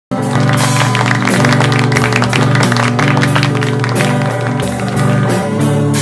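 Rock band playing loudly: a drum kit with repeated cymbal and drum strokes over sustained electric guitar chords, starting abruptly at the very beginning.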